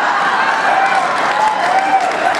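A large audience laughing and applauding loudly in response to a joke, in a dense, sustained wash of clapping and laughter.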